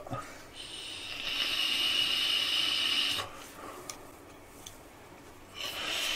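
A long draw on a Uwell Crown 3 sub-ohm vape tank with its 0.25-ohm coil firing at 77 watts: a steady airy hiss of air and vapour pulled through the tank for about two and a half seconds. Then a quieter pause, and an exhale begins near the end.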